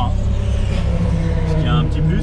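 Dallara Stradale's turbocharged Ford EcoBoost four-cylinder idling steadily, a constant low hum heard from inside the cabin.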